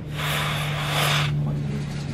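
A hiss lasting about a second, over a steady low hum.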